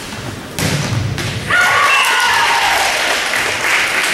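A volleyball hit with a sharp thud about half a second in. About a second later the players break into loud, overlapping shouting and cheering as the point is won.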